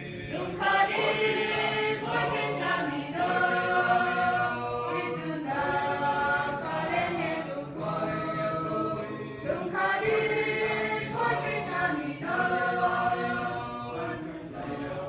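Mixed choir of men's and women's voices singing a hymn together, with notes held in phrases about two seconds long.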